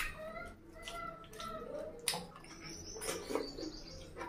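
Close-up mouth sounds of eating mutton on the bone by hand: wet sucking and chewing with sharp clicks, and short wavering high-pitched squeaks in the first half.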